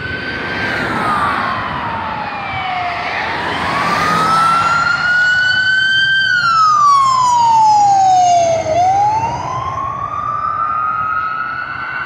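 Fire engine siren in a slow wail, its pitch rising and falling about every five to six seconds. It is loudest about seven to eight seconds in, as the truck passes.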